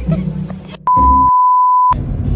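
Background music with a beat, then a loud, steady electronic beep: a single pure tone about a second long, laid over the edit as the music cuts out.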